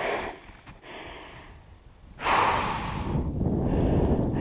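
A woman's heavy, effortful breathing and huffs as she struggles to get up out of deep snow after a fall. The louder, longer rush of breath and rustling about two seconds in comes as she gets back onto her feet.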